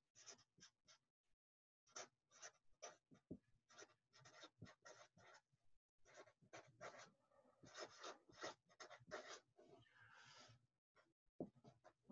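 Sharpie felt-tip marker writing on a sheet of paper: faint, short strokes in clusters with brief pauses between words.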